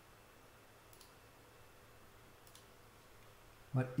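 Two faint computer mouse clicks about a second and a half apart, over low room tone.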